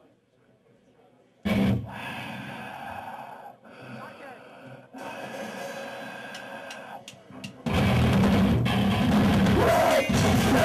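A heavy rock band starting a song live. After a brief near-silent pause there is a sudden loud strike about a second and a half in, then ringing guitar under crowd noise. The full band, with distorted guitars and a drum kit, comes in loud about three quarters of the way through.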